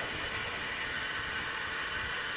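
Steady background hiss and room noise picked up by an open stage microphone, with a few faint steady high tones in it and no sudden sounds.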